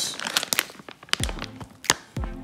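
Plastic microwave rice pouch crinkling and crackling as it is squeezed and emptied, with clumps of cooked rice dropping onto a wooden board. The sound is a run of irregular sharp crackles, the loudest near the end.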